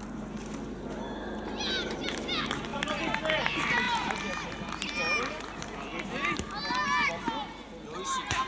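Young players' high-pitched shouts and calls across a football pitch, unintelligible and overlapping, over a steady low outdoor rumble.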